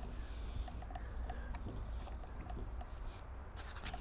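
Faint handling noises, light clicks and rustles of hoses and plastic being moved, over a low steady rumble.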